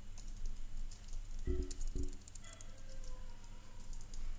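Typing on a computer keyboard: an uneven run of quick keystroke clicks as a line of text is entered.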